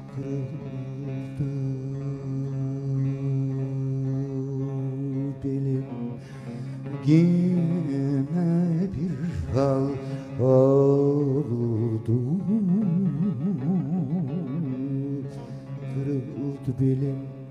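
Turkish folk song performed live: a man sings long held notes with a wide, wavering vibrato, sliding up in pitch around the middle, over a steady accompaniment of plucked bağlama strings.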